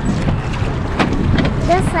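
Rowboat being rowed with oars: steady wind rumble on the microphone, with two sharp knocks about a second apart from the oars working in their rowlocks. A voice starts speaking near the end.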